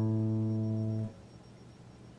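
Epiphone acoustic guitar chord ringing, cut off sharply about a second in, followed by a pause before the next chord.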